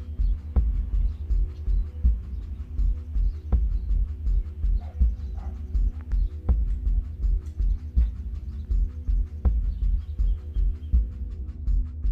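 Instrumental background music: a pulsing low beat under steady held tones, with a sharp hit about every one and a half seconds.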